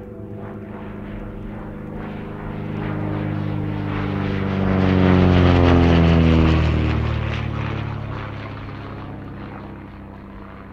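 An aircraft flying past: an engine drone swells to its loudest about five to six seconds in, its pitch dropping as it passes, then fades away.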